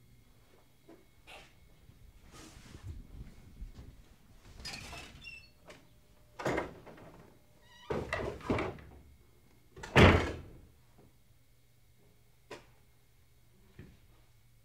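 A door being handled: a series of knocks, thuds and rattles, the loudest thud about ten seconds in.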